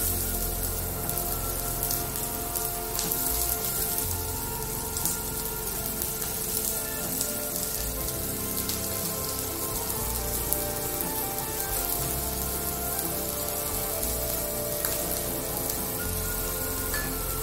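Chopped onion sizzling in hot oil in a frying pan, a steady hiss, with background music.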